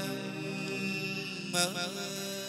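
Chầu văn ritual music: steady held notes with a brief louder accent about one and a half seconds in.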